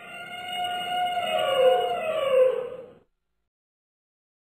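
Elephants trumpeting: overlapping calls that hold their pitch and then slide downward, over a low rumble, for about three seconds before stopping.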